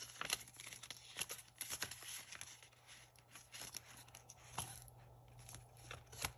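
Paper banknotes and a clear plastic binder envelope being handled, giving quick crinkling rustles and small clicks. The handling is busiest in the first few seconds and thins out after about four seconds.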